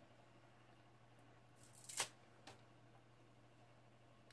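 Quiet room with a low steady hum, broken about halfway through by one sharp click and a fainter tick half a second later as a sponge dauber is handled and its sponge swapped.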